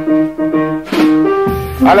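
Jazz piano playing a soft vamp under the talk, chords struck one after another and left to ring.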